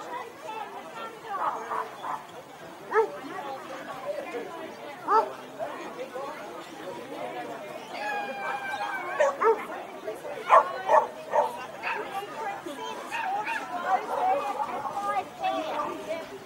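A dog barking several times, in a cluster about halfway through, with people chatting in the background.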